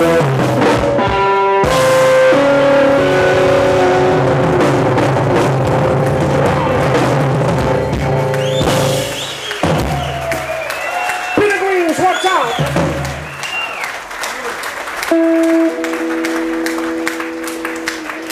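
Live blues band of electric guitar, bass, drums and keyboard playing loudly, ending a song about halfway through. After that come a voice and scattered applause, with a steady held chord starting near the end.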